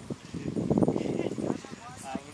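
A Holstein Friesian cow lowing once, a rough low moo lasting about a second, amid people talking.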